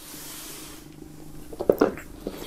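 A folded cotton T-shirt with a CD case on it being slid by hand across a wooden tabletop: a brief rubbing hiss in the first second. Near the end come a couple of light knocks as a cardboard box is set down on the table.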